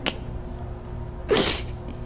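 A single short, sharp burst of breath close to the microphone, about a second and a half in, from the woman under hypnosis.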